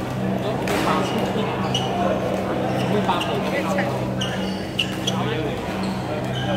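Busy badminton hall: voices from around the courts, sharp racket strikes on shuttlecocks and short high squeaks, over a steady low hum.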